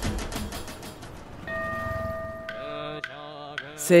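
Fast, even drumbeats fading out in the first second, then a steady ringing tone, then a voice chanting from about halfway in.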